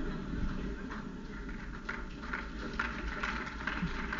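Scattered, irregular clapping from a lecture-hall audience.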